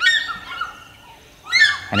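African fish eagle calling: a quick series of high yelping notes at the start, then another series about a second and a half in.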